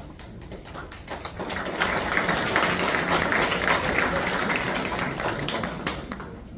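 Audience applauding, many hands clapping at once, swelling about a second and a half in and dying away near the end.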